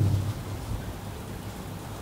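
Steady, even hiss of background room noise picked up through a microphone during a pause in speech.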